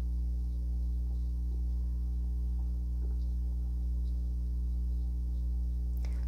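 Steady low electrical hum with evenly spaced overtones, with a few faint ticks.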